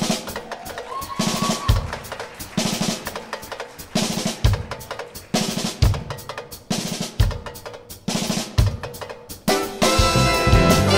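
Jazz drum kit played alone in a solo break, with snare and cymbal strokes and a low bass-drum accent about every second and a half.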